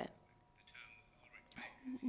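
A short pause in the speech, with only a faint voice murmuring low in the background and a faint steady hum underneath.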